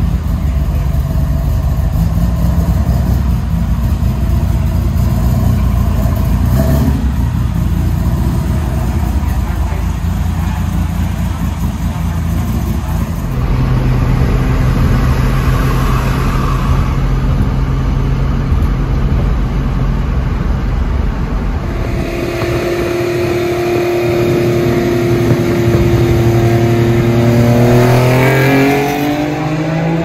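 Datsun 240Z's twin-cam KN20 engine running, holding a steady note for long stretches and then rising in pitch as it revs up near the end.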